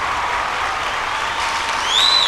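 Studio audience applauding steadily. A faint held tone runs underneath, and near the end a high, gliding, whistle-like tone comes in.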